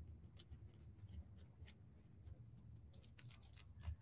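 Faint, irregular snips of scissors cutting around flowers on a paper napkin.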